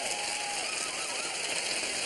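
Studio audience applauding steadily, a dense even patter of clapping.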